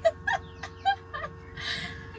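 A woman laughing hard in short, high-pitched bursts, with a breathy gasp near the end.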